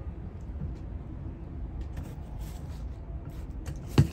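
A melon being handled on a wooden table: faint rubbing and clicks, then one sharp knock near the end, over a low steady rumble.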